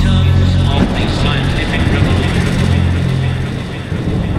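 Neurofunk drum and bass in a breakdown: a heavy, distorted synth bass with gritty, speech-like textures, and the drum beat mostly dropped out. It dips a little in level near the end.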